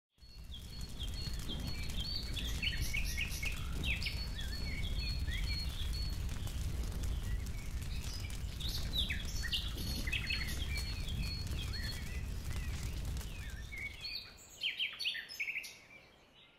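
Many small birds chirping and singing over a steady low rumble of outdoor background noise. The sound fades in at the start, and near the end the rumble drops away, leaving a few louder chirps.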